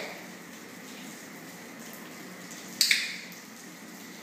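A single sharp click from a dog-training clicker near the end, marking the puppy's correct sit-stay for a treat, ringing briefly off the hard floor over a low steady room hum.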